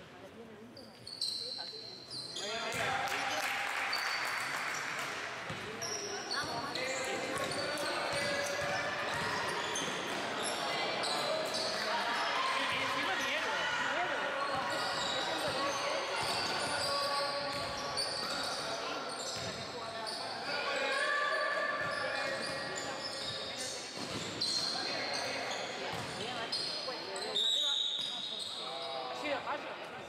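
Basketball game in a sports hall: the ball bouncing on the wooden court, players' voices and shouts echoing, and many short high squeaks from sneakers on the floor.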